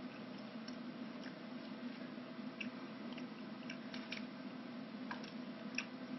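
Faint, scattered small clicks of someone chewing a freshly fried cinnamon-sugar churro, over a steady low hum.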